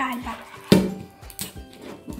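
Plastic toy capsule being handled and pried at, with one sharp crack a little under a second in and a few softer clicks, over light background music.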